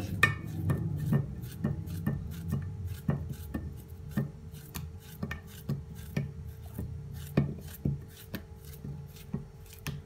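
Knife slicing a peeled banana held in the hand, the rounds dropping into a glass baking dish: a steady run of short soft clicks, about two a second.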